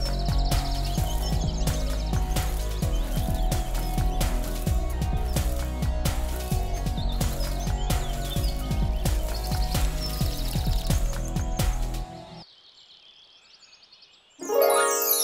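Background music with a steady beat, with bird chirps over it near the start and again about nine seconds in; it stops about twelve seconds in, leaving only a faint sound.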